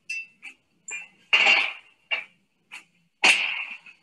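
Metal clanks of a copper pot still's hatch lid being closed and clamped shut: lighter clicks, then two loud clanks that ring on briefly, about a second and a half and about three seconds in.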